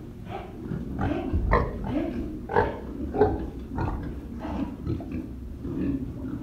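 Domestic pigs grunting in a close-packed group, a run of short grunts coming about one or two a second, loudest a little before the middle.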